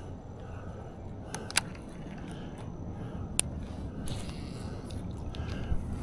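A baitcasting reel gives a few sharp clicks during a cast: two close together about a second and a half in, and one more a little after three seconds. Under them runs a steady low outdoor background.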